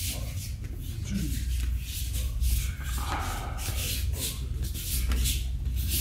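Many bare feet shuffling and sliding on judo mats, with gi fabric rustling, as a group steps through a footwork drill: short irregular scuffs, several a second, over a steady low rumble.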